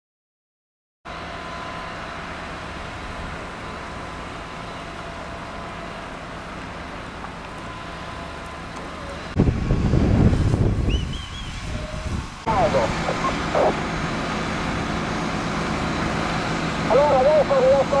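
Outdoor noise at a burning hay barn: a steady rush, with a loud low rumble for about two seconds near the middle. After a cut, people's voices come in and grow stronger near the end.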